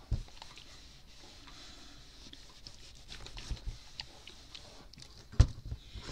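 Fabric being handled and folded by hand: soft rustling with scattered small clicks, and one sharp knock about five seconds in.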